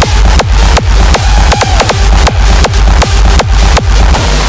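Raw hardstyle track in its drop: a heavy distorted kick drum on every beat, about two and a half to three a second, with a synth line above it.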